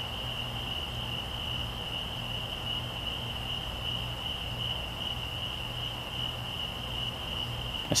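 A night chorus of crickets: one steady, unbroken high-pitched trill, with a low steady hum underneath.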